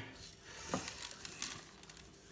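Hand rubbing a salt-and-pepper mix into the skin of a raw duck: faint, irregular soft rubbing and squishing with a few light clicks.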